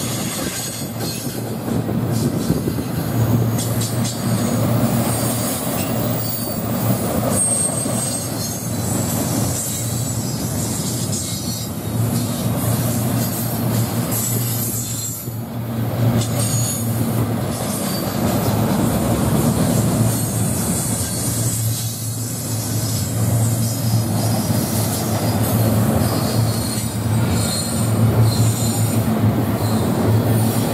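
Double-stack intermodal freight train's well cars rolling past, a steady rumble of wheels on rail with thin, high metallic wheel squeals coming and going.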